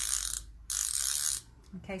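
Clover dome threaded needle case being twisted round, clicking like a rapid ratchet in two short turns of under a second each.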